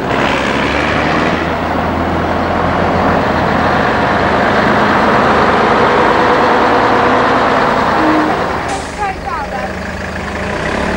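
Heavy vintage recovery truck's engine running loudly as the lorry drives slowly past close by, swelling as it comes nearest. A short hiss near the end.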